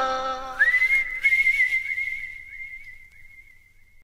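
The end of a song: the last chord dies away, then a single high whistle-like note slides up and is held, wavering slightly as it fades out.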